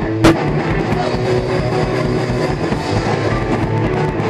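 A punk rock band playing live and loud, with distorted electric guitars and a drum kit, heard close up from inside the crowd. A single sharp knock stands out about a quarter of a second in.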